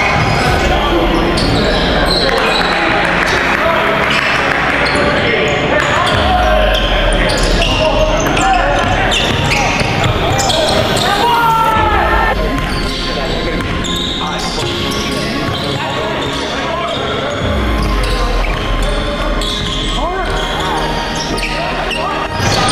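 Live basketball game in a large gym: the ball bouncing on the hardwood court amid players' voices calling out, echoing in the hall.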